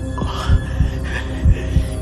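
Soundtrack sound design: deep, heartbeat-like throbbing pulses about every half second over a steady low hum, with a few short falling tones.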